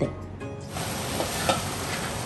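Cut okra frying in oil in an aluminium pan: a steady sizzling hiss that sets in suddenly under a second in, with a couple of light scrapes of a wooden spatula stirring it.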